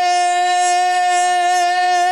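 A man singing a naat into a microphone, holding one long, steady high note on a drawn-out vowel without a break.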